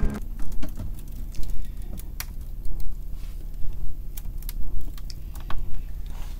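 Scattered light clicks and knocks at irregular intervals over a low rumble: handling noise from a hand-held camera being moved about by hand.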